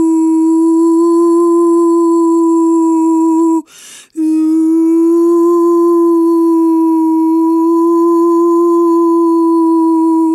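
A woman's voice holding one long, steady note, broken about three and a half seconds in by a quick breath, then taken up again at the same pitch.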